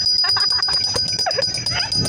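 People laughing in short, choppy bursts.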